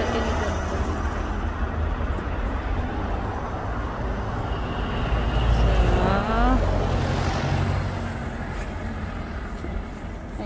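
Road traffic passing close by: a red double-decker bus goes past near the start, and a low rumble of passing vehicles swells loudest about five to seven seconds in before easing off.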